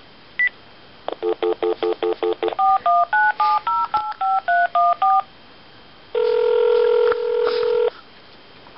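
Panasonic cordless phone handset on speaker: a single key beep, a quick string of pulsed dial-tone beeps, then about ten touch-tone digits dialed in quick succession. About six seconds in, a steady ringing tone starts: the call ringing at the other end.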